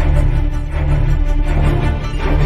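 Intro theme music with a deep, steady bass line under a logo animation.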